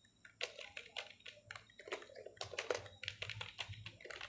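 Keys of a computer keyboard being typed in an uneven run of clicks with short pauses between them, fairly quiet.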